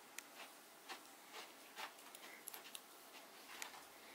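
Near silence with a few faint, scattered soft ticks and rustles: fingers parting the fibres of a synthetic wig.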